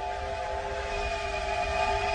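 Train whistle sound effect fading in: a steady chord of held whistle tones over a low rumble, as the intro to a song.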